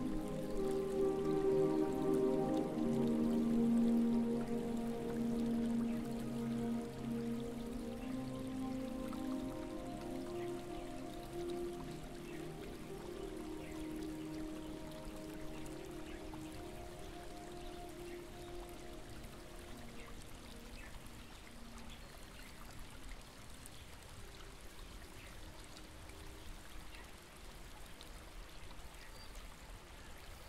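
Soft ambient music of slow, held chords fading out over the first twenty seconds or so, over the steady trickle of a small stream that carries on alone.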